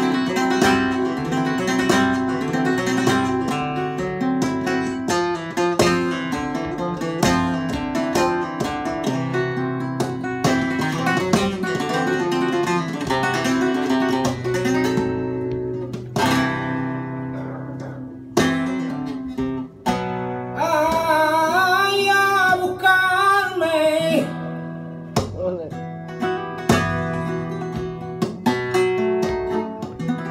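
Flamenco guitar playing a bulerías por soleá passage, with runs of plucked notes and strummed chords throughout. About two-thirds of the way through, a voice sings a brief wavering phrase over the guitar.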